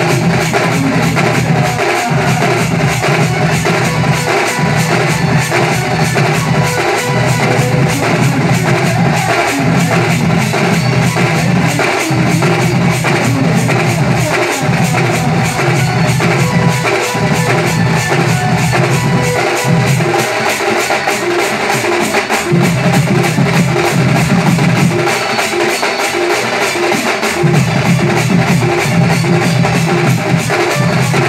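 Loud band music: a troupe of shoulder-slung drums beaten in a fast, steady rhythm over amplified melody music, with the deep part dropping out briefly twice in the second half.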